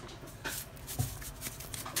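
Soft rustling with three light knocks, at about half a second, one second and near the end, from seasoning raw chicken breasts in a foam tray.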